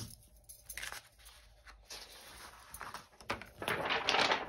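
Faint handling noises on a craft table: light taps and small rustles, then a louder paper rustle near the end as a sheet of paper is picked up.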